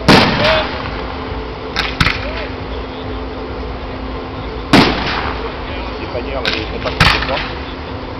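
Aerial firework shells bursting with sharp bangs: a loud one right at the start and a lighter one just after, two more about two seconds in, another loud one just before five seconds, and two more near the end.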